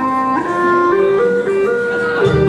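Vietnamese bamboo transverse flute (sáo trúc) playing a slow melody of held notes that step up and down in pitch.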